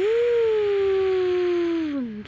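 A person's voice imitating a machine engine: one long held vocal drone that falls slightly in pitch, with breath in it, and breaks off after about two seconds.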